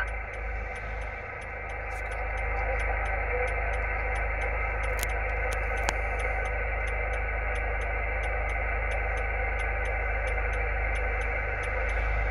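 Icom IC-706 HF transceiver receiving on the 20-metre band in upper sideband: a steady hiss of band noise from its speaker, with the highs cut off by the receive filter and faint steady whistles of weak carriers in it.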